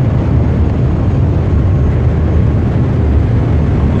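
Steady low rumble on the open deck of a cargo ship turning in to berth: the ship's machinery mixed with wind buffeting the phone's microphone.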